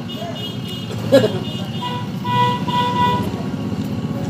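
Motor vehicle running nearby as a steady low rumble, with a horn sounding for about a second a little over two seconds in.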